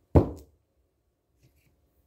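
A single sharp knock just after the start, fading within half a second, as a red onion is set down on the counter close to the microphone.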